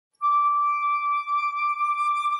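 A flute holding one long, high note that begins a moment in and stays steady.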